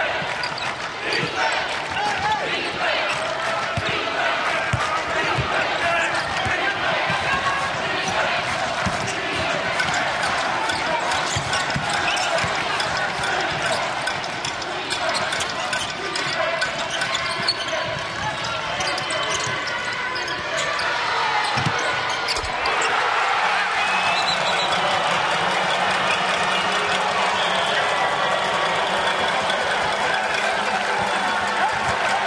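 A basketball dribbled on a hardwood court in a large arena, with scattered thuds of the ball over the continuous hubbub of crowd voices.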